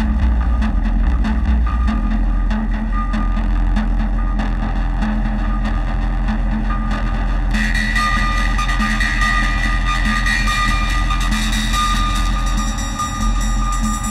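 Live experimental noise music from modular synthesizers and a keyboard: a heavy low bass drone with a pulsing mid tone and crackling clicks. About halfway through, a bright high whining tone and hiss come in over it.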